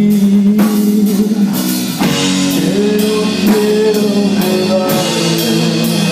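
Live rock band playing: electric guitar chords ringing over a drum kit with regular cymbal strikes, the cymbals growing fuller about two seconds in.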